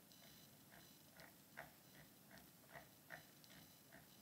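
Near silence: room tone with a faint, regular ticking, about two or three ticks a second.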